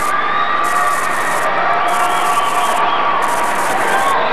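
Basketball crowd in a gym cheering and shouting steadily, a continuous loud din of many voices.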